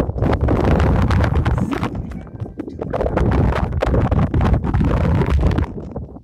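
Wind buffeting a handheld phone's microphone, mixed with rustling and knocking from a hand on the phone: a loud low rumble broken by many short rubs and knocks, easing briefly about two seconds in.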